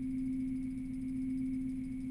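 A steady, unwavering low drone tone held on one pitch, with a fainter high tone above it.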